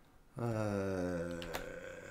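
A man's long drawn-out "uhhh" hesitation, held at one low steady pitch for about a second and trailing off, with one short click about one and a half seconds in.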